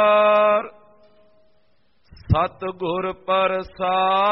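A man chanting a devotional recitation. A long held note stops about two-thirds of a second in, followed by a pause of about a second and a half. Then melodic, syllable-by-syllable chanting resumes.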